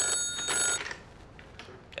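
Old-style desk telephone ringing with a bright, steady bell tone that cuts off abruptly under a second in as the receiver is lifted.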